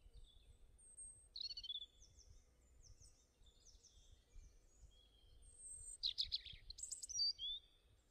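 Small birds chirping and singing: a string of short high chirps and falling whistled notes, busiest and loudest about six to seven and a half seconds in.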